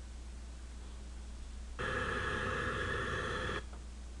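An electronic buzzer tone, steady and rough, sounding once for just under two seconds starting about two seconds in and cutting off suddenly, over a low steady room hum.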